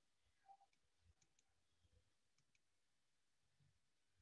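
Near silence with faint computer mouse clicks, two quick double clicks a little over a second apart.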